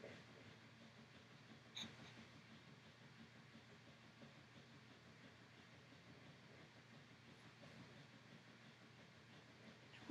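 Near silence: quiet room tone, with one short, faint sound about two seconds in.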